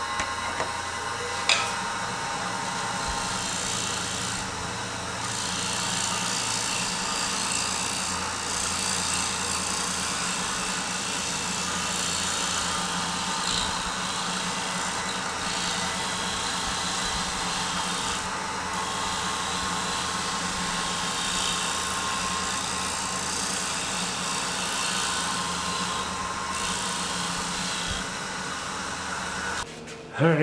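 Wood lathe running while a negative-rake round-nose scraper cuts the spinning basswood bowl: a steady scraping hiss over a steady hum that stops abruptly near the end.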